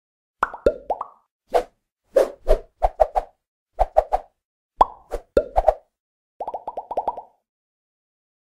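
Cartoon-style popping sound effects on an animated intro: short pops in quick groups of two or three, some with a falling pitch, then a fast run of about ten pops near the end.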